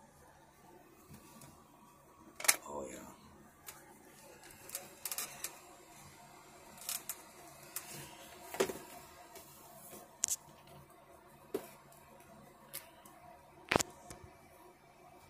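Irregular sharp clicks and taps, about a dozen, from colouring pens being handled and worked against the paper; the sharpest come a couple of seconds in and just before the end.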